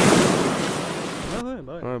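Surf from a breaking ocean wave: a loud rush of water noise that slowly fades, then cuts off suddenly after about a second and a half.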